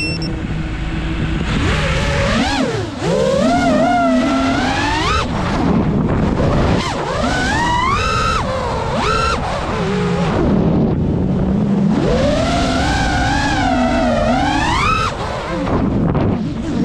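Motors and propellers of a 3.5-inch FPV freestyle quadcopter in flight, a whine that rises and falls in pitch with the throttle, with repeated swoops up and down as the pilot punches out and backs off.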